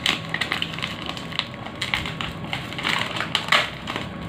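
Brown paper courier pouch being torn open and crumpled by hand: irregular paper crackling and ripping, with a few sharper rips.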